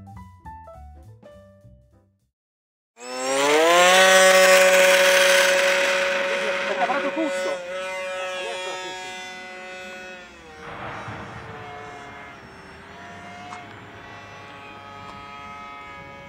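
Piano music fading out, then about a second of silence. About three seconds in, the propeller motor of a radio-controlled flying-wing model aircraft starts up at high power with a steady pitched tone. It is loudest at first and slowly fades as the model flies off.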